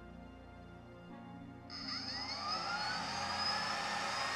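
IKAWA Home hot-air coffee roaster's blower fan starting up a little under two seconds in, a rush of air with a whine that rises in pitch as it spins up to begin the preheat. Faint background music before it.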